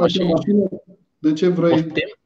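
A man speaking, with a short pause about a second in.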